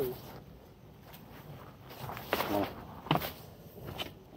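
A few footsteps in flip-flops on stone in a quiet spell, with a short bit of voice about two and a half seconds in.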